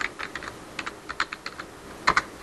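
Typing on a computer keyboard: a quick, irregular run of about a dozen keystrokes.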